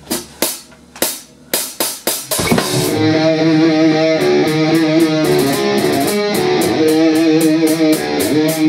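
Rock band starting a song: a few separate drum strikes over the first two seconds, then guitar chords ring out together with the drum kit, with cymbal strokes about four a second from the middle on.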